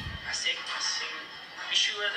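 Speech from a recorded interview played back over loudspeakers: a man talking, in Spanish with English subtitles on screen, sounding thin and lacking bass.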